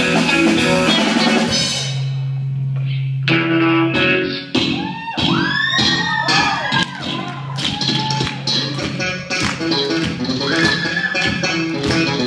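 Live rock band playing: electric guitars, bass and drum kit. About two seconds in, the full band thins to a held low note, then comes back with notes sliding up and down in pitch.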